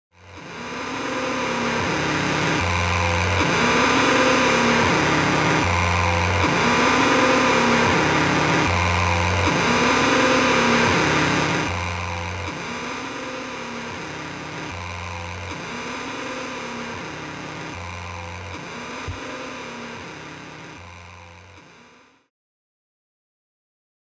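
Looped experimental noise music: a dense hiss over a low pulse that returns about every three seconds, with rising-and-falling tones repeating between the pulses. It drops in level about halfway through and fades out at the end.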